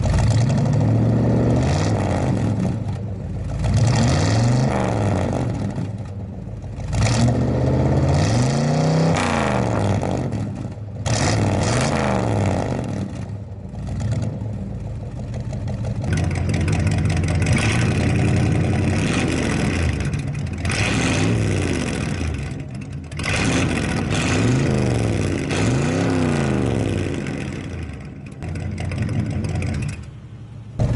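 GMC 454 big-block V8 running through Cherry Bomb glasspack true-dual exhaust, revved again and again, each rev climbing and falling back to idle.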